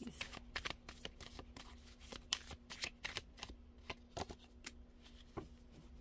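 A deck of tarot cards being shuffled by hand: a quick run of card clicks and slaps, thick in the first half and thinning out toward the end.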